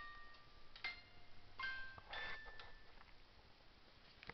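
A musical toy's bell-like chime notes: four or so single notes, unevenly spaced and slowing, that stop after about two and a half seconds.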